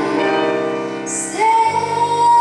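A live pop band with electric guitar, bass and drums holds sustained chords while a woman sings into a microphone; about one and a half seconds in she comes in on a new long held note.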